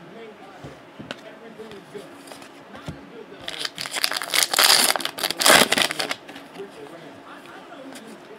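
Foil trading-card pack wrapper crinkling and crackling as it is handled and torn open, a dense burst of about three seconds in the middle.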